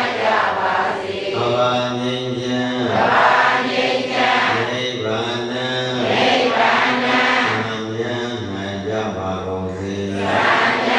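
A Buddhist monk chanting in a single male voice, held on long steady notes of a second or two each, without pause.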